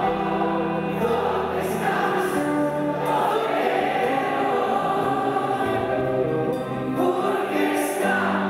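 Live rock band playing a slow song: several male voices singing together in harmony over electric guitar, bass, drums and piano.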